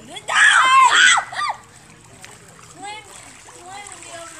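A loud, high-pitched excited voice, lasting about a second, over water splashing in a pool, followed by fainter voices.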